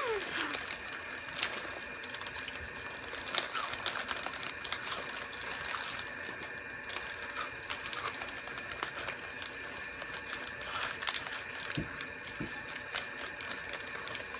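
Crunchy Hot Cheetos being chewed, with the snack bags crinkling: a quiet, irregular run of small crackles and clicks.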